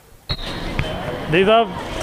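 A single sharp knock about a third of a second in, then steady street background noise, and a man starts speaking about a second later.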